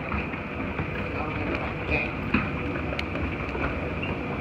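Montgomery escalator running: a steady mechanical hum with a thin high whine and a few sharp clicks from the moving steps.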